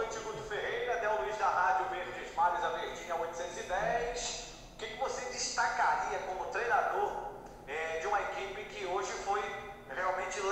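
A reporter's voice asking a question in Portuguese, speaking steadily with short pauses; it sounds thin, lacking bass, as if heard over a remote line.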